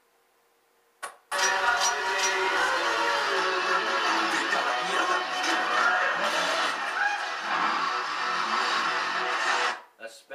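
Film soundtrack, mostly music, playing loudly through a TV's speakers as a streamed movie channel comes on. It starts suddenly about a second in, after near silence, and cuts off abruptly just before the end.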